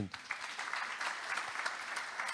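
Audience applauding: many people clapping at once, holding steady.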